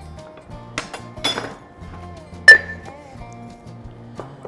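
Glass clinking as a glass salt jar is handled and set down against glassware, with one sharp, ringing clink about halfway through and a few lighter clicks before it.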